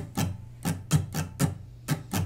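Steel-string acoustic guitar strummed lightly in a steady down-and-up strum pattern (D DU UDU), about four strokes a second, the chord ringing on between strokes.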